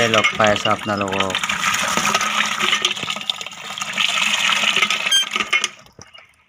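Water pouring from a hand pump's spout into a plastic bucket, a steady rush that cuts off abruptly just before the end.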